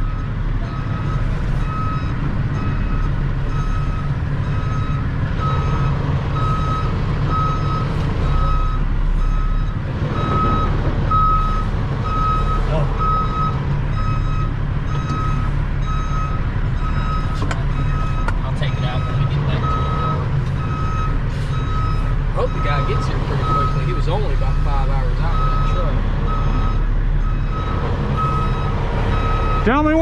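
Loud backup alarm of a heavy truck beeping in a steady repeating pattern as the truck reverses, over the low rumble of its running engine.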